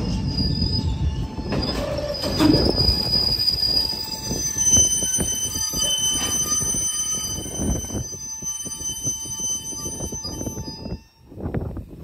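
Freight train of covered hopper cars rolling past, its wheels squealing in several steady high tones over the rumble and knocking of the wheels on the rails. The sound dies down near the end.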